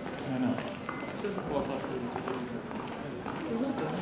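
Several people walking down a corridor: footsteps under low, indistinct murmured voices.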